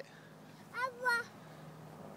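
A small child's voice: two short, high-pitched syllables about a second in, over a low outdoor background.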